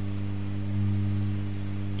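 Steady low electrical hum from the lecture's microphone and sound system, with a pitched drone and its overtones, swelling slightly about a second in.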